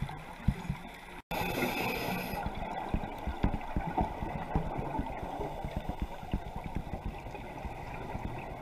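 Muffled underwater sound recorded by a GoPro in its housing: a steady wash of water noise with many soft, irregular low knocks and bubbling. The sound drops out for an instant about a second in, then a short hiss follows.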